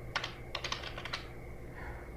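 Computer keyboard keystrokes: a quick run of about seven key presses in the first second or so, then the typing stops.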